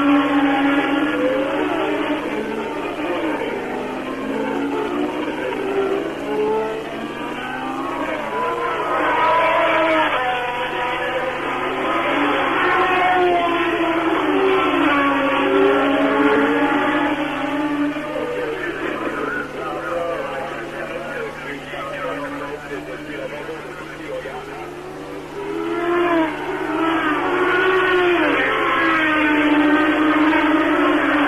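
1970s Formula One cars running at racing speed, several engine notes overlapping and rising and falling in pitch as the cars come and go. There is a brief lull about three-quarters of the way through. The sound is dull and muffled, as on an old TV broadcast sound track.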